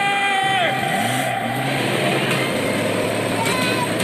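A car engine running under a dense rushing noise, with a steady low hum through the middle. A long held vocal cry comes at the start, and another just before the end.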